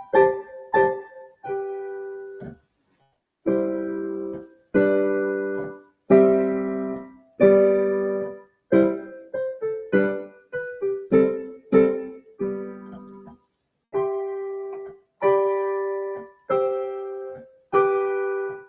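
Digital piano played with both hands: a beginner's dance piece in 18th-century style, made of short detached (staccato) notes and chords in phrases. There are brief silent pauses between phrases about three seconds in and again just past the middle.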